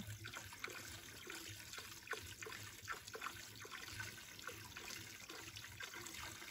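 Faint trickle of water from a small spring-fed spout into a shallow pool below, with irregular little splashes.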